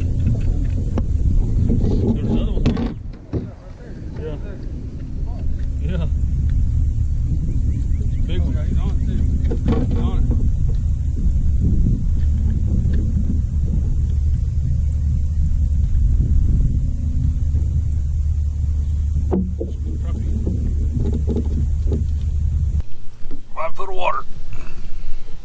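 Bass boat's electric trolling motor running with a steady low hum, cutting off about a second before the end. Faint voices and a few small knocks on the boat lie over it.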